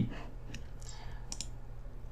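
A quick pair of faint computer mouse clicks about a second and a half in, over low room noise.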